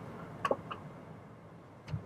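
Quiet car cabin with a few faint, short taps of a fingertip on the dashboard touchscreen.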